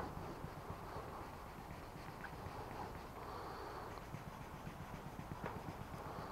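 Faint, steady rubbing of 1500-grit sandpaper on a short wood stick, worked lightly by hand over a car's clear coat to level a high spot.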